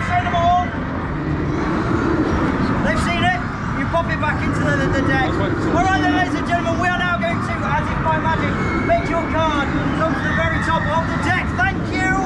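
Speech: a man's voice, a magician's patter during a card trick, over steady outdoor background noise.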